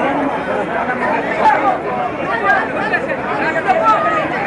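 A packed crowd of people all talking and calling out at once, many voices overlapping into a steady chatter.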